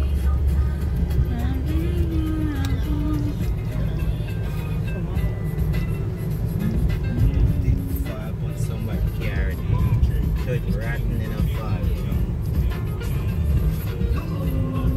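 Steady low road rumble of a car driving, heard from inside the cabin, with a song playing over it.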